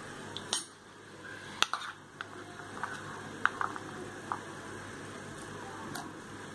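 A few light clicks and knocks on a stainless steel bowl as chopped onion is added to beaten eggs, the sharpest about half a second and nearly two seconds in, over a faint steady hiss.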